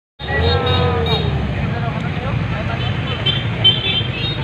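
Roadside traffic of motorcycles and cars with a crowd talking, over a steady low engine rumble; in the first second and a half a passing engine's pitch rises and then falls.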